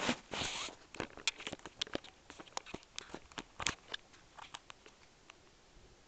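Handling noise from the camera being picked up and moved: irregular clicks and rustling over about five seconds, loudest in the first second, dying away near the end.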